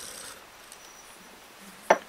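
Faint handling noise of a lever-drag fishing reel being turned over in the hands, low rubbing against the reel's body, with a brief sharp sound just before the end.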